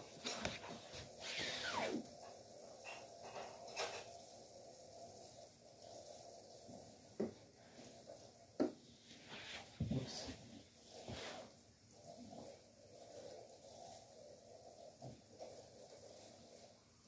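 Faint rustling and handling of artificial Christmas tree branches, with a few light knocks and clicks scattered through, the sharpest about seven, eight and a half and ten seconds in.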